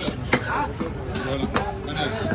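A large knife chopping through a mahi-mahi into steaks on a wooden log block: two sharp chops about a second apart, the blade knocking into the wood.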